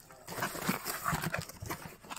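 Clear plastic bags of dried cloves rustling and crinkling as hands handle them, with scattered small knocks and taps.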